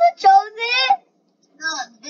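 Only a child's voice: a couple of spoken words, the last drawn out with a sliding pitch, then two short vocal sounds near the end.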